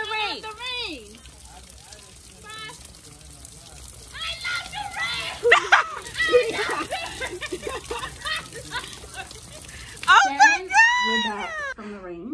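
Women shouting, shrieking and laughing in bursts during jumping jacks, over a steady hiss of rain. The loudest is a high-pitched scream near the end.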